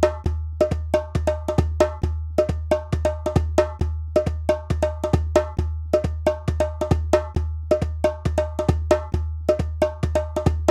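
Drum music in a steady trance rhythm: a deep low drum beat about two and a half times a second, with sharper, higher struck hits that ring briefly, played over it at a quicker pace.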